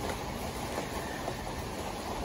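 A pause in speech: steady, even background noise of the room, with no distinct event.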